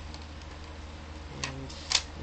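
Light plastic clicks and handling of a toy blaster shell as a foam dart is pushed into it, with a sharp click near the end, over a steady low hum.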